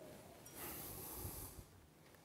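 A faint, long sniff, air drawn in through the nose for about a second while nosing a glass of whiskey.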